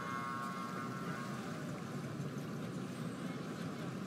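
Steady background street ambience, a low even rumble like distant traffic, with a faint held tone in the first second.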